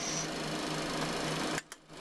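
Steady electrical whir and hum of a Cessna Citation X cockpit's powered-up avionics and instruments running on battery power, before the APU is started. A thin high tone stops just after the start, and the sound cuts out briefly about one and a half seconds in.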